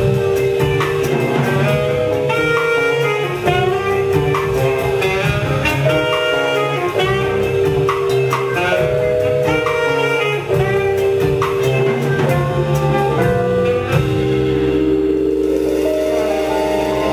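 Live jazz band of keyboard, bass guitar, saxophone and drum kit playing a repeating riff over a steady drum groove. About two seconds before the end the drums stop and held keyboard chords ring on.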